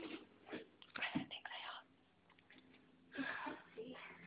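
Hushed whispering voices in short, breathy bursts, with pauses between.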